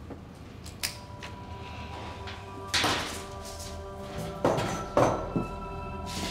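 Film-score drone of steady sustained tones, coming in about a second in, under several short scuffs and knocks of movement, the loudest about three and five seconds in.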